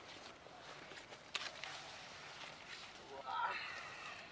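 Rustling of corn leaves and stalks as someone moves through a dense cornfield, with a sharp click about a second and a half in and a brief murmured voice near the end.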